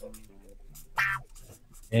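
Writing on paper, the light scratch of a pen or crayon as answers are jotted down, under faint murmured speech with one short louder syllable about a second in.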